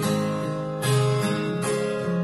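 Acoustic guitar strummed live, an instrumental passage with a new chord struck about every second.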